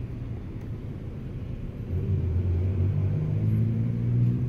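Low, steady hum of a running vehicle engine, growing louder about halfway through.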